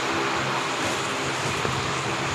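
Steady rushing background noise with a faint low hum, holding level throughout.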